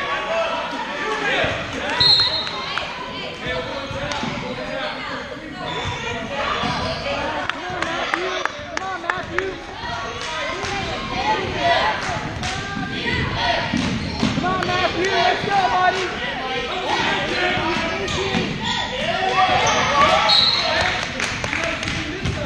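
Basketball dribbled on a hardwood gym floor during play, among overlapping, indistinct voices of players and spectators in a large gym.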